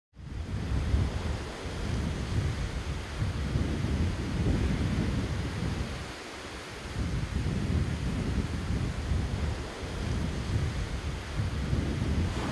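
Ocean surf washing onto a sandy beach, a continuous rush, with wind buffeting the microphone in low gusts. It eases briefly about six seconds in.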